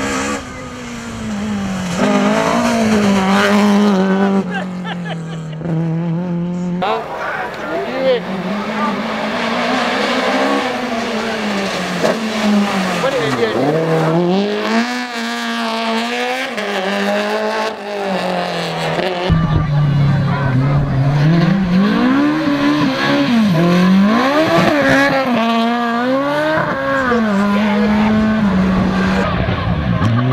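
Rally cars' engines revving hard up a hill climb, the pitch repeatedly climbing and then dropping as the drivers shift gears and lift for corners, with several cars heard in turn.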